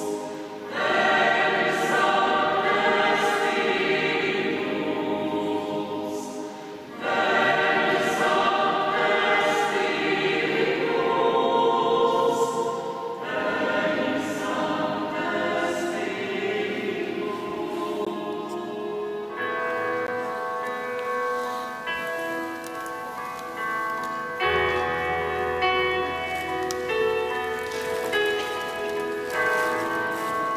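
Choir singing sacred music in phrases, with short breaths about seven and thirteen seconds in. From about twenty seconds it moves into long held chords, and a low bass note joins near twenty-five seconds.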